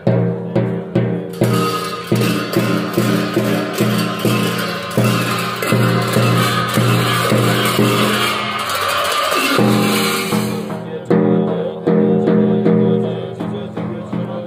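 Tibetan Buddhist ritual music: hand cymbals clashing and ringing over a large frame drum beaten at about two strokes a second, with a low sustained tone underneath. The cymbals' bright wash cuts off near the end, leaving the drum beats.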